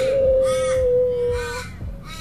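A long, whale-like call held on one steady pitch, sliding slightly down and ending about a second and a half in, over a soft repeating pulse.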